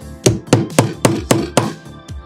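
About six sharp knocks, three to four a second, of metal pliers against a wooden dowel and the wooden board of a bow maker as the dowel is fitted into its hole, over background music.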